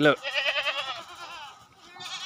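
A goat bleating once, a quavering call about a second long, with a fainter bleat trailing near the end.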